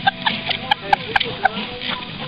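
Laughter: a person laughing in a string of short bursts, several a second.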